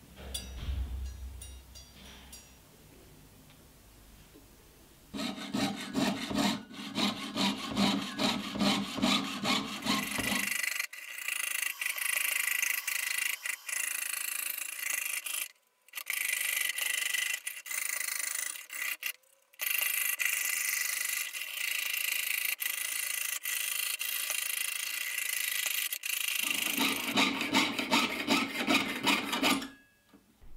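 Jeweler's saw with a fine 4/0 blade cutting 0.8 mm (20 gauge) silver sheet, in steady rasping back-and-forth strokes of about two a second. The strokes start about five seconds in, after faint handling as the blade is set in the frame, and stop briefly twice.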